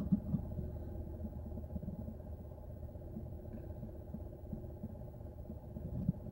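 Faint, steady low hum of a car heard from inside its cabin, with light irregular ticking underneath.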